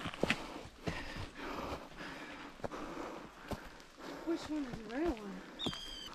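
Footsteps scuffing on a dry dirt and stone hiking trail: irregular short steps and scrapes, with a brief voice murmuring near the end.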